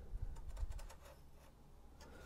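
Faint light scratching and ticking of a small blade scoring a line into a pine board along the edge of a through-tenon, mostly in the first second, then nearly quiet.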